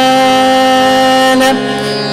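A male Hindustani vocalist holds one long, steady sung note over harmonium accompaniment. The voice drops away about one and a half seconds in, leaving the harmonium sounding.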